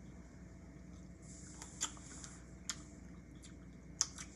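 Faint chewing of a green apple sour candy strip: a few soft mouth clicks and smacks, two sharper ones about two and three seconds in, over a steady low room hum.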